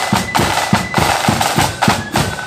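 Marching flute band playing: side drums and bass drum beat a steady march rhythm, about three to four strokes a second, with the flutes holding a high note above.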